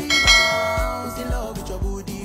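A bright bell chime struck once at the start, ringing out with many overtones and fading over about a second and a half: a subscribe-animation notification-bell sound effect. Music with a steady beat continues underneath.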